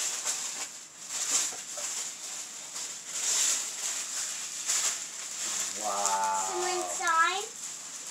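Bubble wrap and tissue paper rustling and crinkling as a wrapped canvas is pulled out and handled. About five and a half seconds in, a person's drawn-out vocal sound holds one pitch, then dips and rises.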